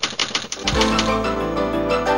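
Typewriter keystroke sound effect: rapid clicks, about ten a second. Less than a second in, theme music with sustained notes and a low bass comes in over them.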